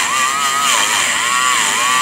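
Dremel rotary tool with a large stainless steel wire brush running at high speed against the breaker points of a Maytag Model 92 magneto, cleaning the contacts. Its steady whine dips in pitch twice as the brush bears on the points.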